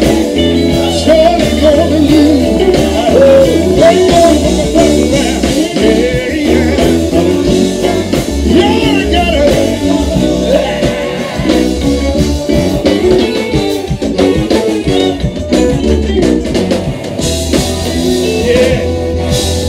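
Live blues band playing loud and continuously, with electric guitar over a steady bass and drum beat.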